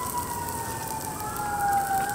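Emergency-vehicle siren wailing, its pitch sliding slowly down and starting to rise again near the end, with a second, higher wail gliding up over it about a second in.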